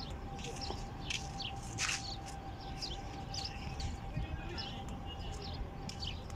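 Birds chirping: many short, high calls, several a second, over a low background rumble and a faint steady tone.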